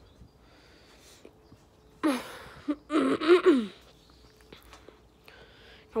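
A person's loud breathy exhale about two seconds in, running straight into a wordless voiced sound that slides down in pitch, an exasperated sigh of frustration; soft breathing around it.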